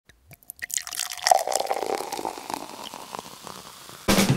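A quick run of small clicks and taps with a faint ringing tone. They start sparse, grow dense and loudest about a second and a half in, then thin out and fade.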